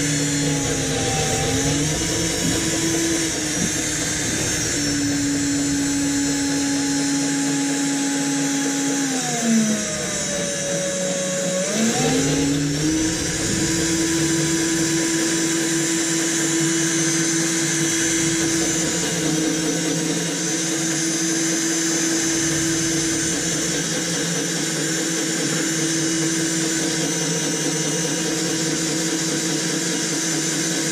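Electric drill running steadily as it bores overhead into the Jeep's steel frame under heavy hand pressure. Its motor pitch drops as it bogs down about ten seconds in, then climbs back up and holds steady.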